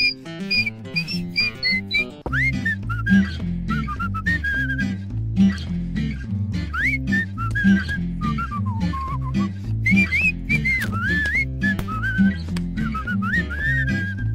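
Upbeat instrumental song with a whistled melody that slides up and down over a repeating plucked bass line and guitar.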